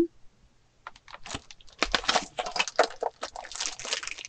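Plastic and cardboard packaging of a hot glue gun kit being handled: a quick, dense run of crackling rustles that starts about a second in.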